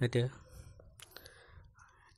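A man's voice says a word, then pauses. During the pause there is faint breath noise and a small click about a second in.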